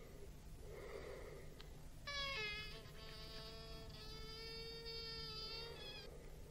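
Slow, faint breathing, then from about two seconds in a long, buzzy synthesizer note held at one pitch, briefly breaking and changing colour before carrying on.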